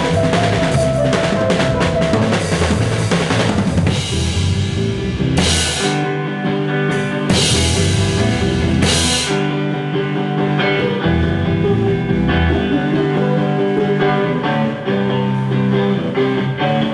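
Indie rock band playing live, with drum kit, electric guitars and bass. Busy drumming runs through the first few seconds. Then come two cymbal washes and held guitar and bass notes, with the drums thinning out in the second half.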